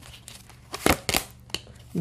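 Tarot cards being shuffled and handled by hand, with a few quick papery snaps and flicks around the middle as a card is drawn from the deck.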